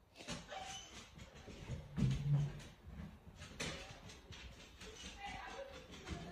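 Dog whining, a run of short whimpering vocalizations with a lower, louder one about two seconds in.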